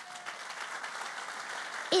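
Audience applauding: steady clapping from a seated crowd.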